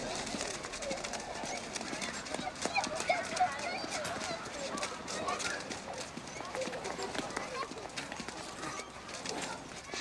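Outdoor street ambience of indistinct background voices and chatter, with scattered short clicks and no single loud event.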